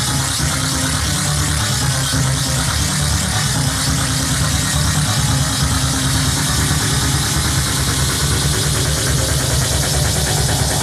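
Techno in a continuous DJ mix, at a stretch built on a steady, rumbling bass drone under a wash of noise, which sounds much like a running engine.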